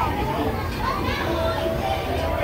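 Children's voices and chatter in a play area: a busy murmur of young voices with no single clear speaker. A faint steady tone comes in just past the middle.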